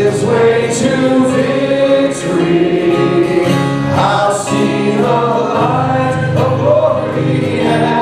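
Live contemporary worship song: a woman and a man singing lead over acoustic guitar, keyboard and drums.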